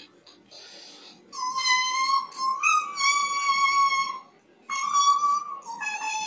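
A dog-like howl in long held notes, one after another with short breaks, the last one lower in pitch.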